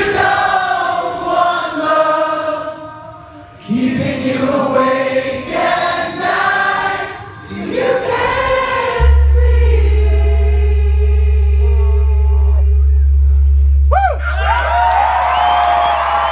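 Live rock band performance near a song's close: several voices sing long, wordless held notes. About nine seconds in, a loud, deep, steady note comes in and holds. Near the end the crowd cheers and whistles.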